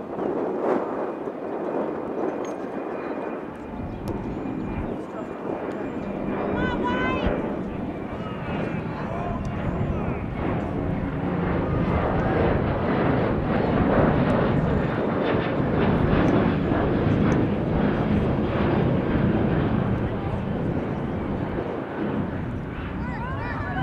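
A low rumble builds from a few seconds in and swells, staying loud for most of the rest, under distant shouts from players on the pitch. A short high call rises in pitch about seven seconds in.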